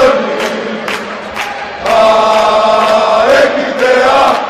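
Football supporters' chant: many voices singing in unison, with a long held note from about two seconds in and sharp hits cutting through.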